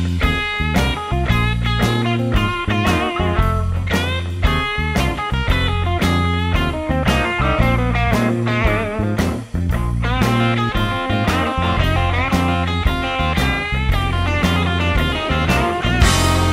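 Rock music led by electric guitar, its notes bending and wavering with vibrato, over a steady bass line and drum beat.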